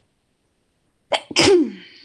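A woman sneezes once, loudly, about a second in: a short sharp catch of breath, then the sneeze itself, its voiced tail falling in pitch.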